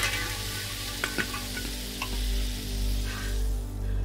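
A dropped drink bottle lying on asphalt, its white, foamy drink gushing out with a hiss and a few small splashes, fading away over about three seconds.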